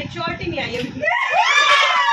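Women chattering, then about a second in a long, high-pitched female squeal that rises and then falls, in a playful, laughing moment.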